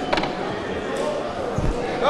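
Ringing of the boxing round bell dying away at the start, then the hum of the crowd in a large hall, with a short knock just after the start and a dull thud near the end.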